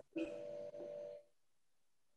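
Faint steady electronic hum with light hiss over a video-call audio line. It cuts off abruptly about a second in, leaving near silence.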